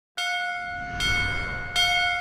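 A large bell struck three times, at the start, about a second in and again near the end, each stroke ringing on in several clear, steady tones that overlap the next.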